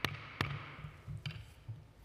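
Wooden gavel striking the desk twice in quick succession, about half a second apart, the signal that the hearing is adjourned. A few fainter knocks follow.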